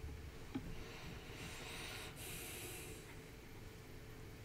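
Faint breath noise, a person breathing out through the nose, lasting about a second and a half near the middle, over a low steady room hum.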